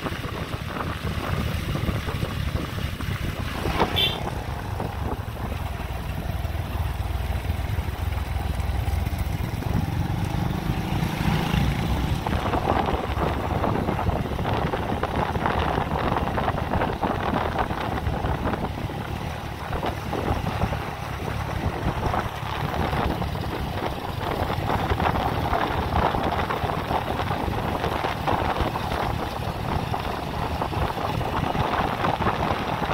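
Motorbike riding heard from the saddle: wind rushing over the phone microphone, with the bike's engine running underneath. There is a short sharp sound about four seconds in.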